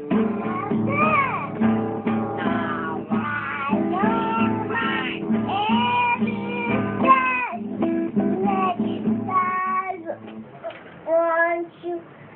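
A young girl singing while strumming an acoustic guitar, its strings ringing steadily under her voice. About ten seconds in the guitar stops and the sound drops, with a short sung phrase near the end.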